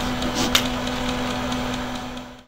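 Steady low mechanical hum over room noise, with a single sharp click about half a second in.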